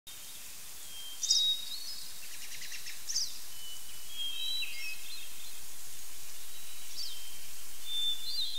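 Nature ambience: a steady hiss fading in at the start, with birds calling over it. Sharp descending calls come about a second in and again about three seconds in, with short whistled notes in between and near the end.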